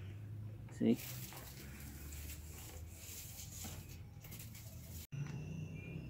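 Faint rustling and light ticking of dry carrizo cane strips being woven by hand into a basket base.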